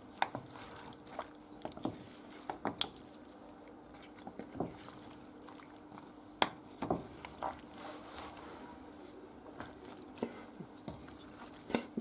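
Wooden spoon stirring seafood in broth in a terracotta dish: scattered soft knocks of the spoon against the clay and wet squelches of the seafood, over a faint steady hum.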